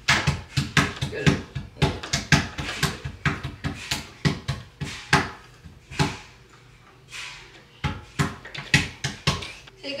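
Rapid, irregular slaps and knocks on a small wooden play table, about four or five a second, with a quieter stretch about six seconds in; a toddler patting the tabletop with her hands.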